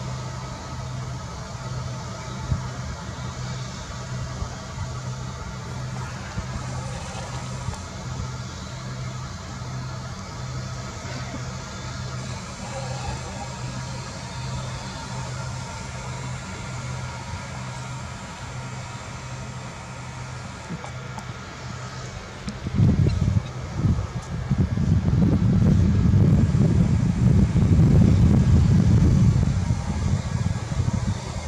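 Low, steady vehicle-like engine hum with a regular pulsing. About three-quarters of the way in, a much louder low rumble takes over.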